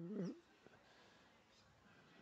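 Near silence, opened by a short wavering whine in the first half-second.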